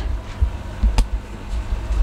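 Handling noise from a hand-held camera being swung round: uneven low thumps and rumble, with one sharp click about halfway through, over a steady low hum.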